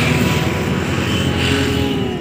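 A road vehicle passing close by, its engine and tyre noise starting abruptly and running steadily at a high level.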